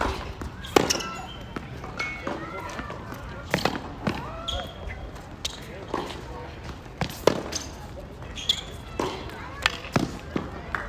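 Tennis ball struck by rackets and bouncing on a hard court during a rally that opens with a serve, a sharp pop about every second. Voices talk in the background.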